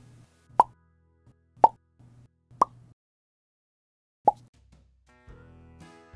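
Four short plop sound effects about a second apart, the last one after a longer gap, each marking a dollop of royal icing appearing on the dish. Light background music starts near the end.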